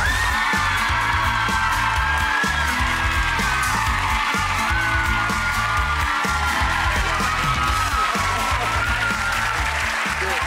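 Upbeat entrance music with a steady low beat, over a studio audience applauding and cheering.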